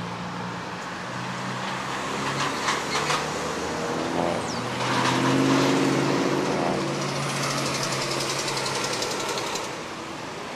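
Road traffic at a busy intersection: engines running and vehicles passing, loudest about five to six seconds in, with a few brief knocks near three seconds.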